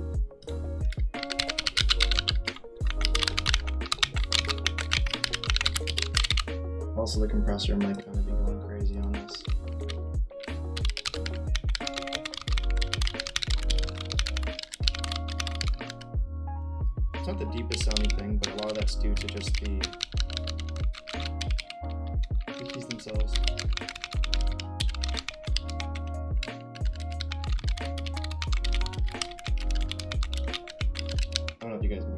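Fast typing on a wireless Corne split keyboard with low-profile Kailh Choc switches: rapid keystrokes in runs of a few seconds with short pauses between. The switches sound a little higher pitched and not as loud as MX linears.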